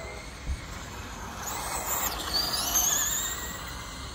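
Radio-controlled cars running on a track, their motors whining in high pitches that glide up and down as they pass, loudest around the middle. A brief thump comes about half a second in.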